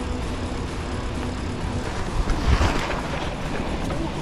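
Wind buffeting an action-camera microphone over the rolling rumble of a Cube Analog hardtail mountain bike's tyres as it is ridden, with a louder, rougher stretch about two and a half seconds in.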